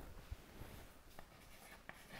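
Faint chalk taps and scratches on a blackboard as writing begins near the end, over quiet room tone.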